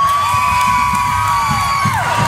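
Crowd noise in a basketball gym, with one long, high held call that rises in at the start and falls away near the end.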